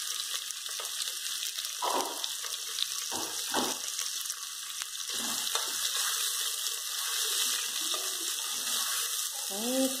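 Calabresa sausage, bacon and pork rind sizzling in hot lard in a pressure cooker, a steady hiss, with a spatula stirring and scraping the pot a few times.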